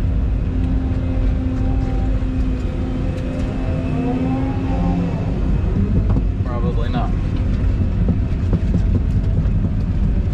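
Volvo tracked excavator's diesel engine running steadily under working load, heard from inside the cab. About halfway through a hydraulic whine rises and falls as the bucket is swung over.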